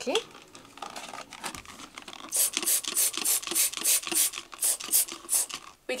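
Hand-held trigger spray bottle of stain pre-treatment squeezed about a dozen times in quick succession, roughly three short sprays a second, starting a couple of seconds in and misting onto carpet.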